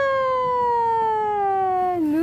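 A voice holding one long, loud 'aaah' whose pitch falls slowly and evenly.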